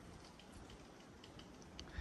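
Faint forest ambience with a few scattered, brief high chirps from distant birds.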